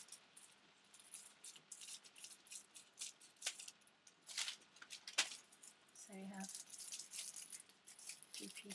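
Iridescent tissue paper rustling and crinkling as it is handled and cut into strips with scissors, in short irregular bursts.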